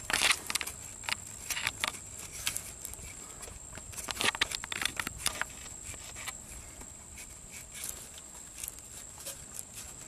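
Hands fumbling and rubbing close by while pushing a plastic wiring-harness connector home on the brake control module (EBCM), giving scattered soft clicks and rustles, thickest about halfway through. A faint steady high whine runs underneath.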